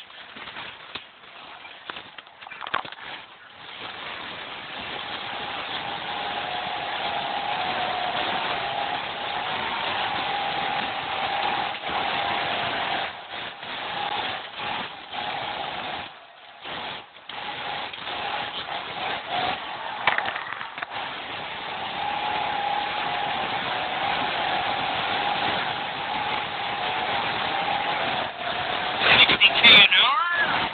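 A Volvo 240's engine and drivetrain heard from inside the cabin while it drives over rough ground. A steady whine runs under the running noise, which drops briefly a few times. A short, louder burst comes near the end.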